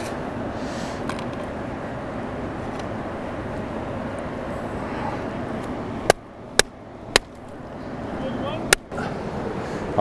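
Steady rush of a fast-flowing river. A few sharp clicks and knocks come in the second half.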